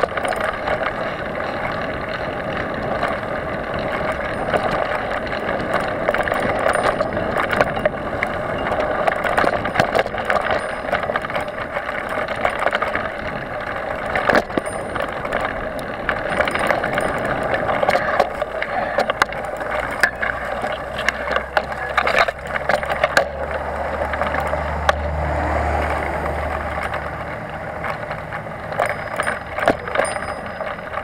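Mountain bike ridden fast over a dirt forest trail, heard from a camera on the ride: a steady rush of tyre noise and wind on the microphone, with frequent sharp rattles and knocks as the bike hits bumps. A low steady hum joins in for several seconds past the middle.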